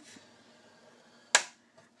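A single sharp click about one and a half seconds in: a scoring stylus knocking against the plastic scoring board while cardstock is being scored.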